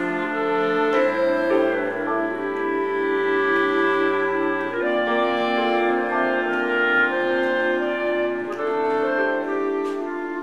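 Clarinet ensemble, with bass clarinets, playing a piece in several parts: sustained chords that change about every few seconds, over a low bass note held through the first half.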